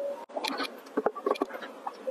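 Close-miked wet mouth sounds from drinking jelly water and mouthing food: an irregular run of small sticky clicks and squelches, after a brief break near the start.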